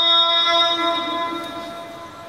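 A man's chanted call to prayer (adhan), one long held note that fades out over the second half.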